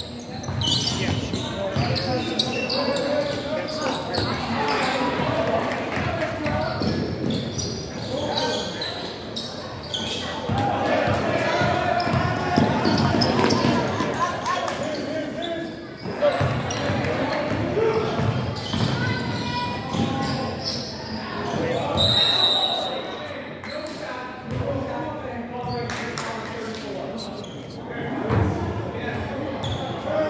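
A basketball bouncing on the hardwood floor of a school gym, with players' and spectators' voices echoing through the large hall.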